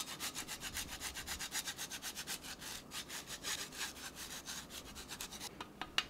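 A block of Grana Padano cheese rubbed over a hand grater in quick, even strokes, about five a second, stopping about five and a half seconds in.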